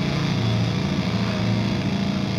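Distorted electric guitar and bass amplifiers left droning in one sustained low, buzzing chord.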